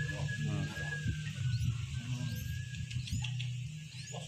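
Nestling birds giving a few short, thin rising begging chirps while being hand-fed, over a steady low hum.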